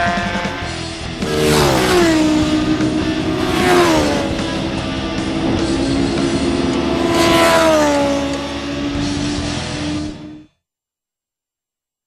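Racing motorcycles passing at speed three times, each engine note dropping in pitch as it goes by, over guitar music. The sound cuts off suddenly about ten and a half seconds in.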